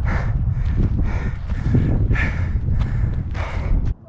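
Wind rumbling on the camera's microphone, with louder rushing gusts about once a second; it cuts off suddenly just before the end.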